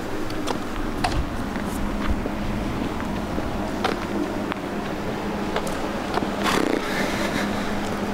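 Outdoor ambience of a paved parking lot: a steady low rumble with a faint hum, and scattered light clicks and scuffs of a person walking on the pavement.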